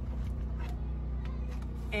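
Faint rustling and a few light clicks from a fabric car seat cover's strap and buckle being handled behind the seat, over a steady low rumble.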